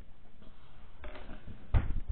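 A single sharp knock near the end, with a fainter tap before it, as felt-tip markers are put down and picked up on a hard tabletop.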